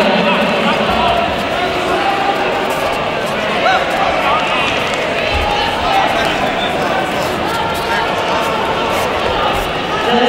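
Crowded sports hall din: many voices talking and calling out at once in a steady, echoing hubbub, with a few faint thuds.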